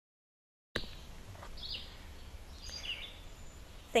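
Dead silence, then a little under a second in an outdoor recording cuts in: steady background noise with two or three faint, short bird chirps.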